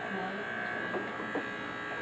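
Corded electric hair clipper running with a steady, even high whine as it cuts short hair on a mannequin head.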